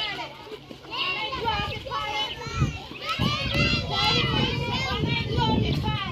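Many young children talking and calling out at once, their high voices overlapping, with a low rumble underneath from about halfway through.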